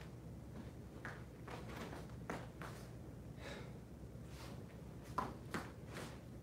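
Faint movement sounds of a kung fu saber form: a string of soft swishes and scuffs, a little under one a second, with two sharper ones near the end, over a steady low room hum.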